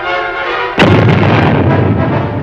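Background music playing, then a sudden loud explosion a little before midway whose rumble carries on for over a second under the music.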